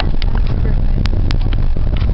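Car cabin noise while driving: a steady low rumble of engine and road, with two sharp clicks a little past a second in.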